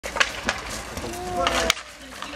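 Ball hockey sticks clacking and striking the plastic ball on a concrete surface, several sharp hits, with a player's held shout in the second half.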